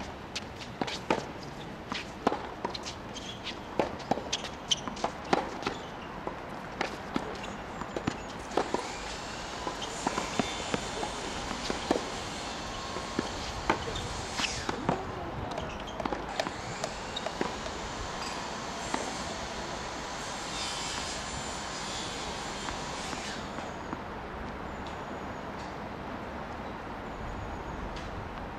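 Tennis rally on a hard court: a string of sharp knocks from racket strikes and ball bounces, densest in the first eight seconds and sparser afterwards, with shoe scuffs in between. A steady high hiss runs under the play from about eight seconds until near the end.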